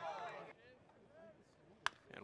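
Faint murmur of voices from the crowd, then, just before the end, a single sharp crack of a metal bat hitting a pitched baseball.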